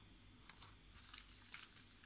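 Near silence: faint handling of a clear plastic stamp sheet, with one small tick about half a second in.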